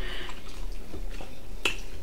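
A man chewing steak close to the microphone, with soft mouth noises and one sharp click about one and a half seconds in.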